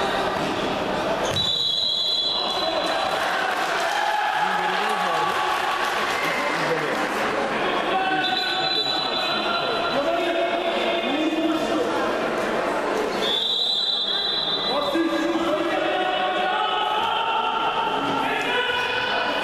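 A handball bouncing on a sports-hall floor amid players' shouts and calls, all echoing in the large hall. A few high sustained shouts or calls stand out, about a second in, around eight seconds and around thirteen seconds.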